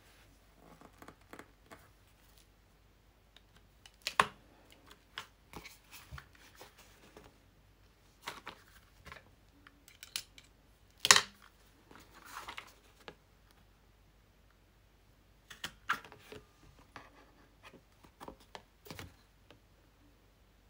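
Scattered clicks and taps of craft tools being handled on a tabletop: a marker pen and a hand-held hole punch. Two sharp clicks, about four and eleven seconds in, are the loudest, with softer rustling between them.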